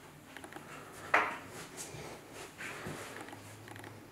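A single sharp clack about a second in, followed by a few softer knocks and light rustling of handling in a small room.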